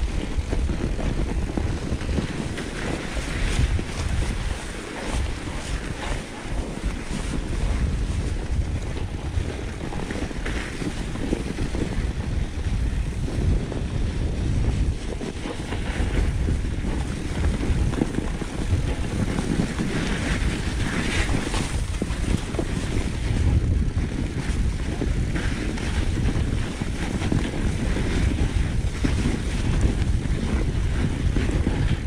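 Wind noise on the microphone of a mountain bike riding downhill over packed snow, with the tyres hissing and crunching on the snow; short brighter scrapes come and go over a steady low rush.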